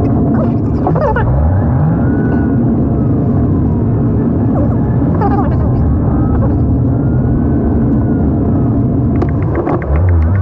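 Steady road and engine rumble of a car driving, heard from inside the cabin. Faint music-like tones sit above it, and near the end a fast, even ticking and a steady hum begin.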